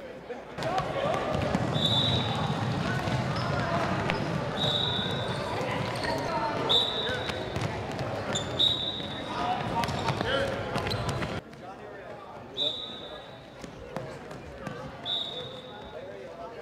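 Sneakers squeaking in short high chirps, about seven times, as players sprint and cut on a hardwood gym floor, with footfalls and indistinct voices echoing in the hall. The busier, louder part ends abruptly about two-thirds of the way in.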